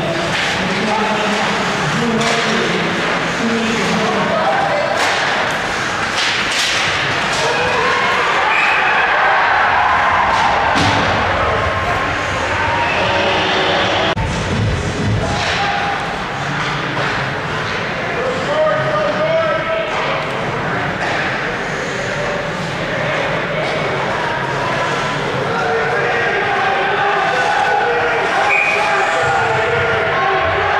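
Live ice hockey game sound in a rink: spectators' voices and shouts run through the play, with repeated sharp thumps and slams of the puck, sticks and players hitting the boards.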